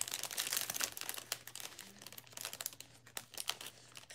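Packaging of a pack of felt stickers crinkling and rustling in the hands as it is opened, in irregular bursts of crackle, busiest in the first second or so and again past the middle.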